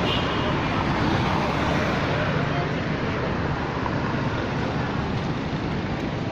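Steady city traffic noise from cars passing on a busy road, with people's voices mixed in.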